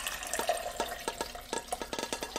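Cooking liquid poured from a stainless steel pressure-cooker insert into a glass measuring cup: a steady pour with many small splashes and drips.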